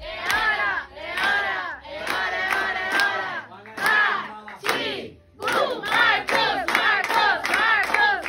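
A small family group of adults and children singing a birthday song together loudly while clapping along. The voices break off briefly about five seconds in, then resume in quicker phrases.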